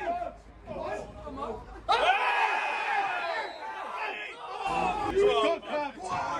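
Football crowd at a match: scattered voices, then about two seconds in many supporters break out shouting together for a couple of seconds before it settles back to scattered calls.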